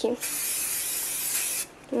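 Aerosol can of alcohol spray discharging in one steady hiss lasting about a second and a half, then cutting off sharply.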